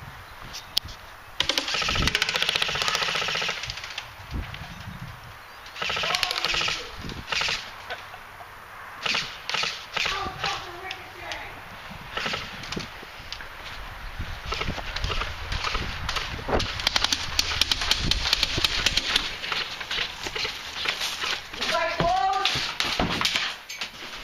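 Airsoft guns firing bursts of rapid shots in several volleys: a long burst a couple of seconds in, shorter ones around six and ten seconds, and a long spell of rapid fire about fifteen to twenty seconds in.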